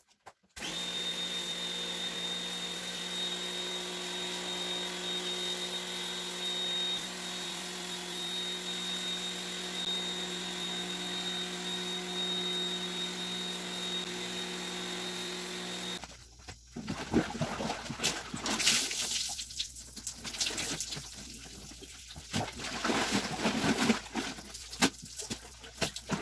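Electrolux electric pressure washer's motor and pump running steadily with a high whine as it sprays the rugs, starting about half a second in and cutting off abruptly about two-thirds of the way through. Irregular knocks and splashing follow.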